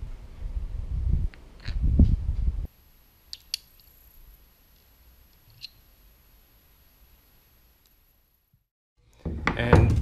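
Handling noise of small plastic fittings and a metal bolt being worked together in the hands: low rumbling and knocking for the first two and a half seconds, then a few faint clicks.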